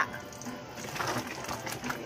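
Sour sinigang broth boiling hard in a steel pot: a dense, rapid bubbling and crackling.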